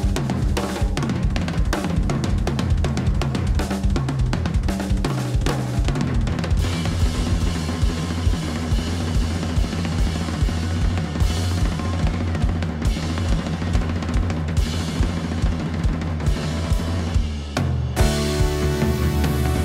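Live band with a busy drum kit groove of kick and snare hits over an electric bass line. The sound grows fuller from about six and a half seconds in, then drops briefly just before the end.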